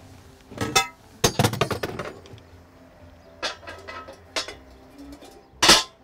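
Metal knocks and clinks as the grill plate is lifted into place on an electric barbecue, a handful of separate strikes with the loudest clank near the end as the plate settles.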